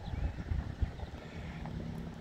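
Wind buffeting the microphone, an uneven low rumble with irregular gusts.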